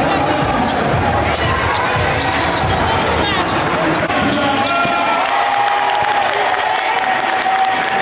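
Basketball bouncing on a hardwood gym court, with knocks and crowd voices around it. A steady held tone sounds through the second half.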